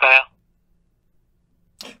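A voice finishes a spoken question in the first quarter second, then dead silence for about a second and a half before the next voice starts near the end.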